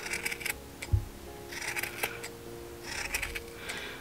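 Scissors snipping through the wound loops of a yarn pom-pom, short crisp cuts in three little bursts: near the start, around two seconds in, and just past three seconds. A soft thump about a second in.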